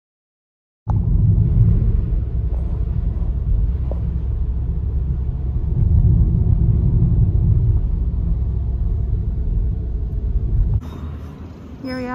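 Steady low rumble of a car on the move, road and engine noise heard from inside the cabin. It starts abruptly about a second in and cuts off shortly before the end, leaving a quieter outdoor ambience.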